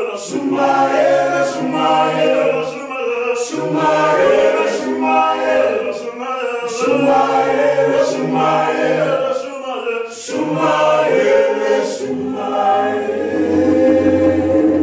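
Male vocal group singing in close harmony, phrases rising and falling and breaking every couple of seconds, with a few sharp djembe hand-drum strokes.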